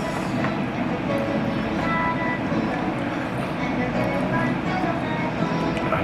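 Steady room noise with faint music and voices underneath.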